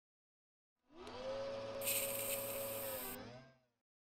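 A whirring motor sound effect under a logo. A tone rises in pitch about a second in and holds steady, a bright hiss joins it for over a second, then it winds down with a wavering pitch and fades out before the end.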